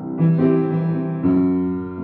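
Keyboard accompaniment playing sustained piano-like chords between sung lines, with a new chord struck just after the start and another a little past a second in.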